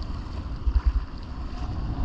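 Wind buffeting a kayak-mounted action camera's microphone over choppy sea, with rough water sloshing and waves breaking around the kayak. A stronger gust buffets the microphone a little under a second in.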